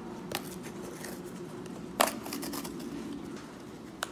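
Cardboard teabag box being torn open along its perforated tear strip: a light click, then about two seconds in a sharp snap as the strip gives, followed by a short rough tearing.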